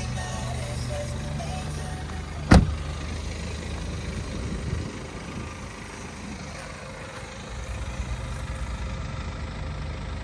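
BMW 320d's 2.0-litre four-cylinder turbodiesel idling steadily. About two and a half seconds in there is a single loud slam, a car door being shut.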